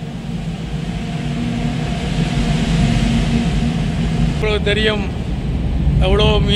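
Low engine rumble with a steady hum, swelling over the first three seconds, like a motor vehicle running close by. A man's voice says a few words about four and a half seconds in.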